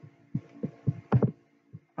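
Several short, soft taps and clicks, about five in two seconds, the sharpest a little after a second in, over a faint steady hum.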